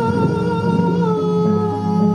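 Live rock band playing: long held keyboard notes over changing low notes, with electric guitar and drums.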